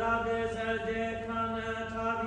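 A priest chanting a Latin prayer alone, holding long notes on a near-steady reciting tone with small steps in pitch.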